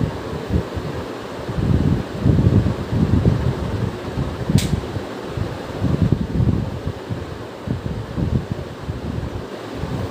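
Uneven, gusty low rumble of moving air buffeting the microphone, with one short sharp click about four and a half seconds in.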